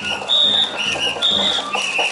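Festival float music during a rope pull: high, piercing notes alternating between two pitches about every half second, over drumming and clattering.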